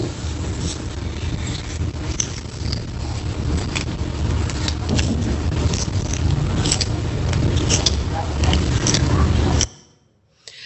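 Crackling clicks from a foot as a finger presses a reflexology area lying near the bone, a crackling the presenter counts among the signs of a dysfunctional reflexology area. It is heard from a video playback over a loud low hum and hiss, and cuts off suddenly near the end.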